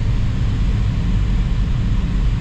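Steady low drone of a light aircraft in flight, heard inside the cockpit.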